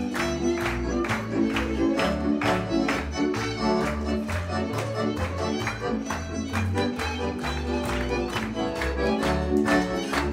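Live band playing lively folk dance music led by a fiddle over a steady beat, with guests clapping along.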